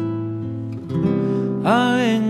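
Recorded acoustic guitar song playing: fingerpicked acoustic guitar holding chords, then a male voice entering with a sung note that slides up into pitch near the end.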